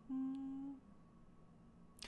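A woman's short, steady closed-mouth hum, a thoughtful "mm" lasting under a second, followed by near silence.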